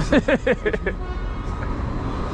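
A man laughs in a quick run of short notes for about the first second. Under it and after it runs a steady low rumble of road and tram traffic.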